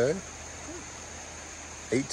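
Steady outdoor background after a single spoken 'okay': the even hiss of a shallow creek running over rocks and sand, with a faint steady high-pitched tone above it.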